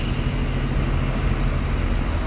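Steady low rumble of city street traffic, with engine hum from vehicles close by.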